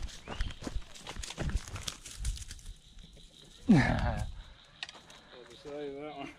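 Irregular knocks and rustles from handling a rod, spinning reel and a freshly hooked fish as it is brought in by hand. About halfway through, a man gives one loud exclamation that slides down in pitch.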